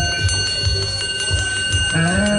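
Live rock band's drum kit keeping time with quick, evenly spaced cymbal ticks and kick-drum thuds after the held chords drop out, over a steady high-pitched whine.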